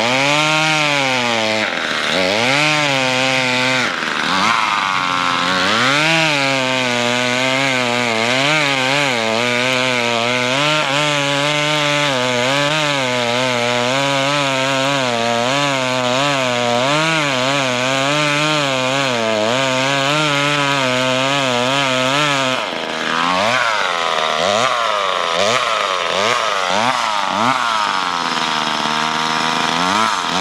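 Two-stroke chainsaw cutting through ice, its engine note rising and falling continually as the chain works in the cut. About three-quarters of the way through it drops for a moment, then runs higher in quick revving swoops.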